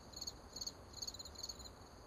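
Crickets chirping faintly: short trilled chirps repeating about two to three times a second, as a night ambience bed.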